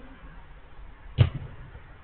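A single sharp thump about a second in: a football kicked hard on an artificial-turf pitch, over faint background noise.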